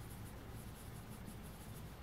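Faint scratching of a graphite pencil on paper as it shades, over a low steady hum.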